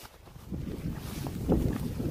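Wind buffeting the microphone, a rough uneven rumble that builds about half a second in.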